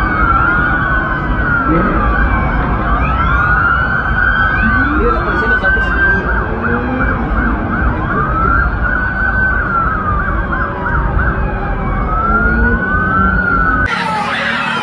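Many police sirens wailing at once, their rising and falling tones overlapping, over a steady low rumble. They cut off abruptly just before the end.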